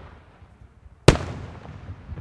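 Aerial firework shells bursting. The tail of one bang dies away at the start, then a loud, sharp bang comes about a second in, followed by a long rolling echo.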